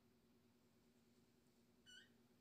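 Near silence with a faint steady hum, broken just before the end by one brief high chirp.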